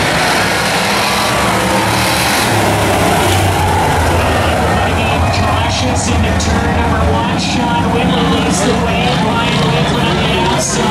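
A pack of Bomber-class stock cars running together on a paved oval track, their engines giving a steady low hum.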